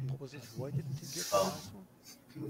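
A man's voice muttering indistinctly, with a breathy hiss just past the middle.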